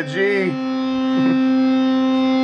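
A sustained electric guitar note at C ringing steadily as a string is tuned. It takes over from a lower G note right at the start.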